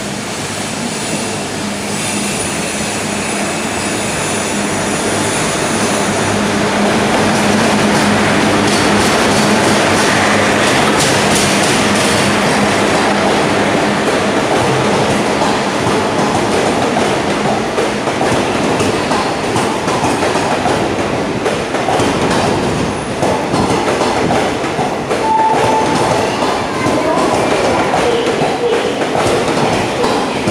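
Electric-locomotive-hauled passenger train pulling in alongside the platform. It grows louder over the first several seconds, with a steady hum as the locomotive passes. The coaches then roll by with wheels clattering over rail joints and a short wheel squeal about 25 seconds in.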